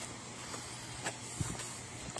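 Steady outdoor background noise with no speech, with two faint short knocks in the middle.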